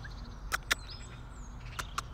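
Quiet outdoor background with a steady low hum, a faint high bird chirp early on, and three sharp clicks.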